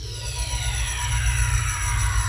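Synthesised logo-sting sound effect: a deep rumble swelling in loudness under several falling, sweeping tones.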